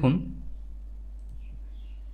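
A few faint computer-mouse clicks over a steady low electrical hum.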